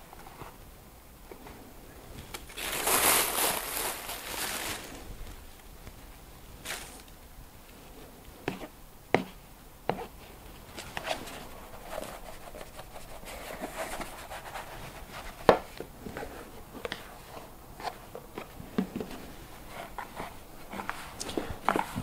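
Plastic bag crinkling as sawdust is shaken from it over maggots in a plastic bait box, the loudest sound, about three seconds in. Then scattered light clicks and taps as the plastic boxes are handled and the maggots are stirred by hand in the sawdust.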